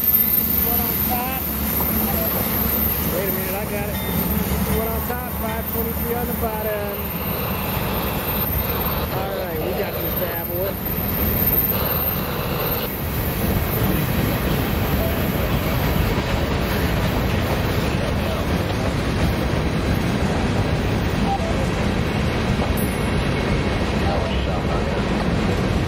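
Amtrak passenger cars rolling past, then a loaded CSX freight train of rock hoppers and gondolas rolling by. The steady wheel-on-rail noise grows heavier and denser from about twelve seconds in, as the freight cars take over.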